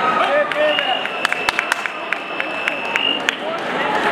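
Crowd chatter echoing in a large hall, with a steady high-pitched tone held for about two and a half seconds from just under a second in, and a scatter of sharp clicks or claps while it sounds.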